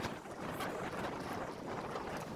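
Wind noise on the microphone, a steady rushing hiss while moving along an outdoor path.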